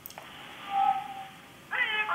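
A meow-like pitched call heard over a telephone line: a held tone, then a rising, wavering cry near the end.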